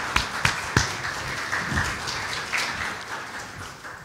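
Congregation applauding, a dense patter of hand claps that dies away near the end.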